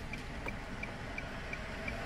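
Low engine and road rumble inside a car's cabin, with a faint, regular ticking of the turn-signal indicator, about three ticks a second, as the car makes a right turn.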